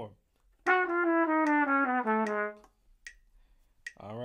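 Trumpet playing a fast descending run of about eight notes, an F-sharp 7 bebop scale in double time, starting about half a second in and lasting about two seconds.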